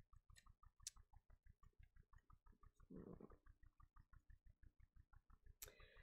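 Near silence: room tone with a faint, rapid, regular clicking, about six clicks a second, and a brief soft noise about three seconds in.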